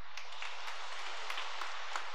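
Congregation applauding: a steady patter of many hands clapping.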